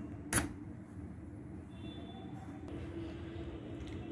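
A single sharp click of a steel spoon against a steel mixing bowl while dry flours are stirred, followed by faint stirring noise over a low steady room hum.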